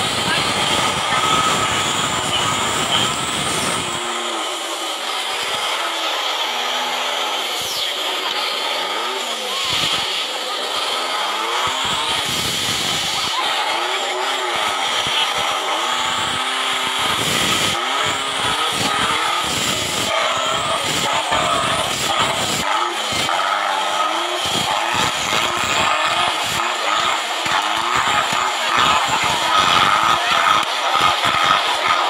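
Off-road competition vehicle engine revving up and down over and over, with voices in the background.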